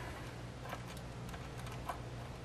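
Faint small clicks from handling a loose footswitch jack and its wiring inside an open amplifier chassis, two clearest about a second apart, over a low steady hum.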